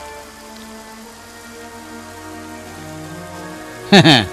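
Soft background music with long held notes over a steady hiss. A man's voice cuts in right at the end.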